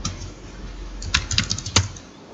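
Typing on a computer keyboard: a keystroke at the start, then a quick run of key clicks from about a second in as a word is typed.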